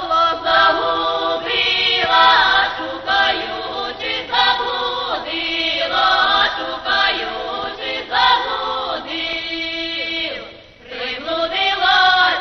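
A folk choir singing a song in parts, with a brief break between phrases about ten and a half seconds in.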